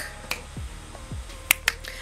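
Background music with a steady low beat about twice a second, and two sharp finger snaps about a second and a half in.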